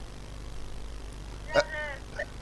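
A low steady hum, with one brief faint voice sound about one and a half seconds in.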